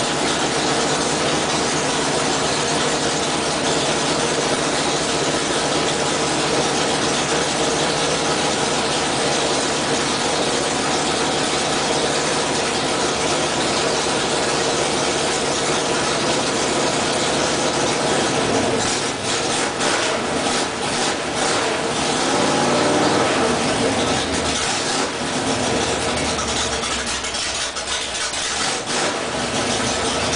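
Race engine of an IMCA dirt modified running on its first fire after a build, holding a steady fast idle. In the last ten seconds or so its speed rises and falls as the throttle is worked.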